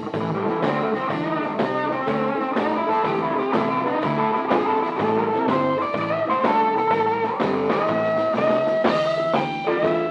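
Live blues band playing an instrumental passage on electric guitars, keyboard and drum kit, with a steady drum hit about once a second. Long held, slightly bent notes come in during the second half.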